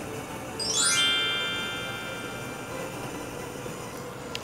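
A chime sound effect: a quick sweep of high tones about a second in, settling into a ringing chime that fades away over about two seconds.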